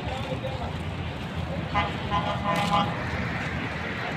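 A vehicle horn sounds about two seconds in, a short toot and then a longer one, over a steady rumble of traffic and crowd voices.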